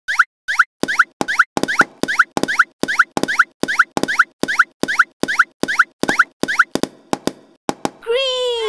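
Cartoon popping sound effects as balls shoot out of the holes of an animated toy popper: short plops that glide upward in pitch, repeated about three times a second. They change to shorter clicks near the end and then stop.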